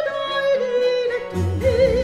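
A soprano sings a Baroque cantata with vibrato, holding long notes over a small instrumental ensemble. A low bass line in the accompaniment comes in strongly about a second and a half in.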